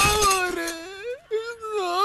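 A man wailing aloud in tears: a long, high, wavering cry that bends in pitch and breaks off briefly a couple of times.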